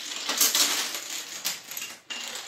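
A long chain of wooden dominoes toppling in quick succession: a dense, rapid clatter of small wooden blocks knocking against each other and onto a hard floor.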